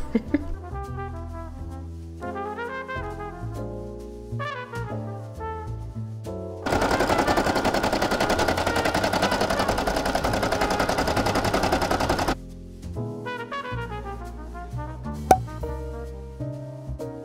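Brother SE1900 embroidery machine stitching out a design: a loud, fast, even rattle of needle strokes that starts about six and a half seconds in and stops suddenly about six seconds later. Background music plays before and after it.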